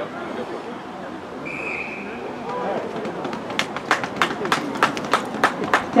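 Spectators at a rugby match clapping in a steady rhythm, about four claps a second, starting about three and a half seconds in, over crowd voices. A short whistle blast sounds about a second and a half in.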